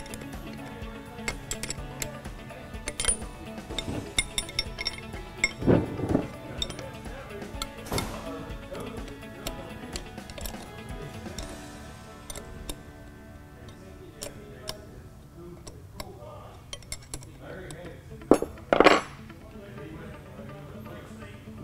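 Steel hardware and a wrench clinking and tapping in irregular strokes as the 15 mm nuts holding a power steering pump to a Dodge Cummins vacuum pump are tightened, with louder knocks about six seconds in and near the end. Steady background music plays underneath.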